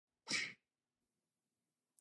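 A single short, breathy burst of sound from a person, lasting about a third of a second, starting a quarter of a second in.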